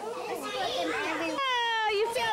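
Several young children talking over one another. About three-quarters of the way in, the sound changes abruptly and one child's voice holds a single long, high call.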